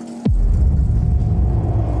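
Dramatic score sting from a TV drama soundtrack: a held synth tone dives sharply down in pitch about a quarter second in and drops into a loud, deep bass rumble that holds.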